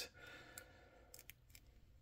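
Near silence with a few faint plastic clicks as the swivel joints of a small Kenner Power of the Force action figure are turned in the fingers.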